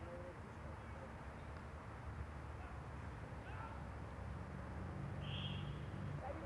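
Faint outdoor field ambience with a steady low rumble, and a brief high, trilling whistle-like tone about five seconds in.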